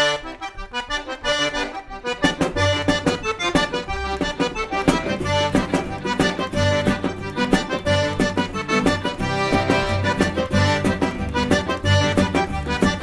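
A Cajun two-step played live, led by a Cajun diatonic button accordion with fiddle, acoustic guitar, upright bass and drum. The accordion opens the tune, and the bass and the rest of the band come in about two and a half seconds in.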